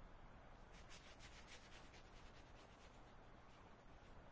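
Faint swishing strokes of a paintbrush on watercolor paper: a quick run of four or five short strokes about a second in, otherwise near silence.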